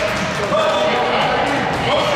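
A basketball bouncing on a hardwood gym floor during play, with the voices of players and spectators echoing in the hall.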